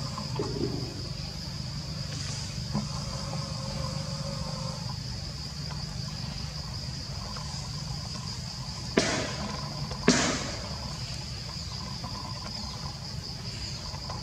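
A steady, high-pitched insect drone over a low rumble, broken past the middle by two sharp knocks about a second apart.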